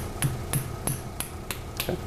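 Surgical mallet tapping the inserter of a 1.8 mm Y-Knot Flex all-suture anchor, driving the anchor into the drill hole in the humerus: sharp, evenly spaced taps, about three a second.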